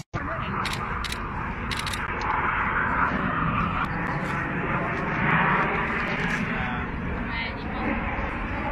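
Distant Aermacchi MB-339 jets of an aerobatic formation: a steady, rushing jet-engine noise that swells a little twice. The sound breaks off for an instant right at the start.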